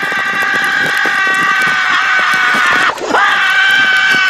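A person screaming, holding one long high note at a steady pitch for about three seconds, then breaking off briefly and starting again at the same pitch.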